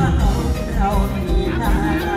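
Live band music played loud through a stage sound system, with a steady low beat and a singer's voice over it.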